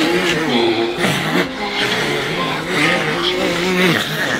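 A man's voice screaming in long, wavering cries that rise and fall in pitch, with a brief break and an upward swoop about a second in.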